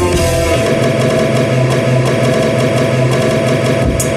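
Loud electronic backing music played live from a laptop and controllers. The bass and beat drop out at the start, leaving a dense, churning, distorted midrange texture over a steady held tone, and the bass returns just before the end.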